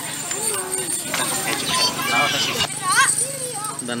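People talking in conversation, with an abrupt edit about two and a half seconds in where a different voice takes over. A faint steady high-pitched whine runs underneath.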